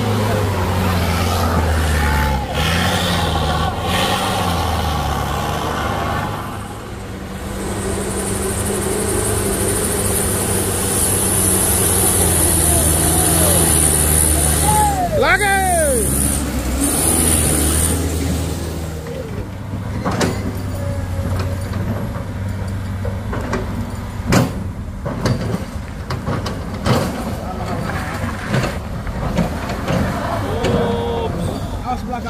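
Truck engines running low and steady as light trucks crawl past on a rough dirt road, with a high hiss through the middle and a few short falling squeals about halfway through.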